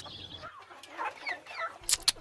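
Chickens clucking softly: a run of short, falling clucks.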